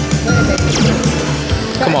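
Slot machine bonus-round music and spin sound effects as the Ultimate Fire Link Cash Falls free-spin reels spin and fireball symbols land. Steady low tones run under a brief sweeping chime near the middle.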